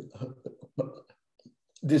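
A man's voice, quiet and halting: short fragments of speech that the recogniser did not transcribe, then clearer speech resuming near the end.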